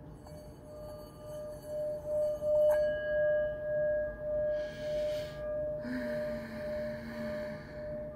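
Brass singing bowl played with a wooden mallet. It sings one steady tone that swells to its loudest a couple of seconds in, with a brief contact of the mallet that adds a higher ring. It then rings on with a slow wobble in loudness as it fades. A soft hiss overlaps twice in the second half.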